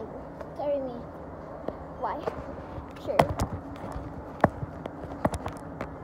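Children's voices in brief snatches over a steady background hum, with a few sharp knocks and clicks, the loudest a little after the middle.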